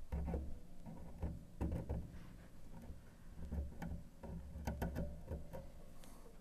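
Close-up handling noise from hands working a plastic glue syringe at a piano soundboard rib joint: irregular light clicks and taps, with low bumps underneath.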